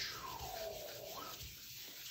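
A hand rubbing the back of a sheet of Bristol paper laid on an inked gel printing plate: a soft, quiet rubbing as the paper is burnished to lift the acrylic print. A faint squeak glides down and back up in about the first second.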